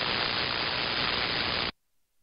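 Steady radio static hiss from an ANAN 7000DLE SDR transceiver's receiver on 27.305 MHz in the 11-metre band. It cuts off suddenly about 1.7 seconds in, as the rig is switched to transmit.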